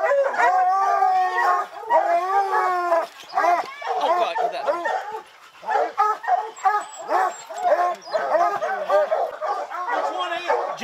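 A pack of hunting hounds baying at a bear holed up in a rock den: long, drawn-out bawls for the first three seconds, then a run of short, quick barks.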